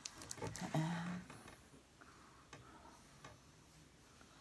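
A few faint, sticky clicks and soft rubbing of hands working a thick, lotion-like hair product between the palms and into the hair.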